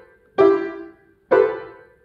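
Upright piano played by a hand dropped onto the keys and bounced off again: two struck chords about a second apart, each ringing out and fading before the next.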